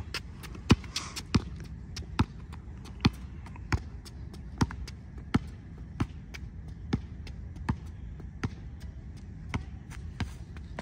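Basketball being dribbled on an asphalt court: a steady run of sharp bounces, somewhat more than one a second.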